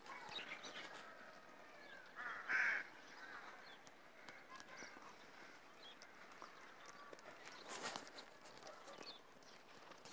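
Faint outdoor quiet with scattered bird calls, the loudest a short call about two and a half seconds in.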